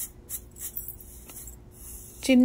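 Mustard seeds poured into hot oil in a small steel pan, sizzling in short, intermittent hissy bursts with a few faint clicks.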